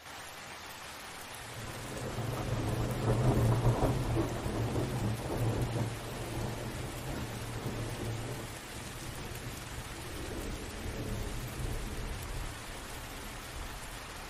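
Steady rain with a low thunder rumble that builds about a second and a half in, is loudest a couple of seconds later and fades away by about six seconds. A fainter rumble comes again near ten seconds.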